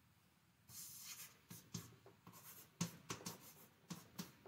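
Chalk writing on a blackboard: a quick run of scratchy strokes and taps, starting under a second in.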